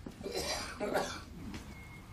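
A man's faint breathy throat sounds, twice, about half a second and a second in.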